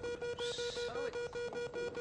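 Big game-show money wheel spinning, its pegs clicking rapidly past the pointer, over a steady tone.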